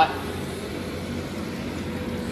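Connecting-rod honing machine running steadily, its diamond hone mandrel spinning inside the rod's bore: an even motor hum with a faint steady tone.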